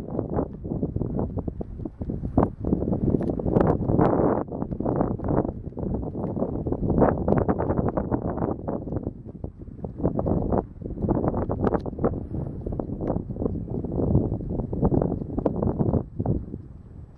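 Wind buffeting the microphone in uneven gusts, mixed with many irregular soft thumps from a herd of dromedary camels walking on sand.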